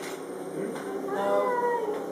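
A woman's drawn-out, whining "nooo" of protest about a second in, its pitch rising and then falling over most of a second; it is high and plaintive enough to pass for a cat's meow.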